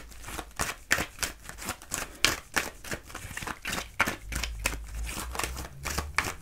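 Oracle cards being shuffled by hand: a quick, uneven series of sharp card flicks and snaps.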